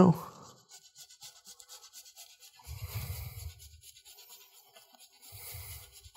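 A block of Parmesan cheese being grated on a microplane: a quick run of soft, rasping scrapes. A low, muffled sound comes about three seconds in.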